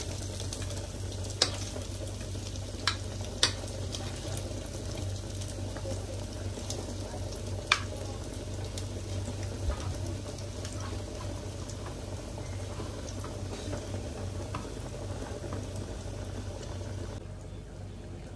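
A pan of fish cooking on a stove, giving a steady sizzle, with four sharp ticks in the first eight seconds.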